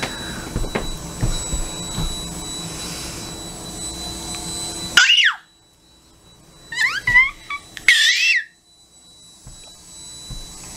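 Blanket rustling over a steady background hum, which cuts out suddenly about halfway. After it come three short, high-pitched toddler squeals with gliding pitch, about a second apart.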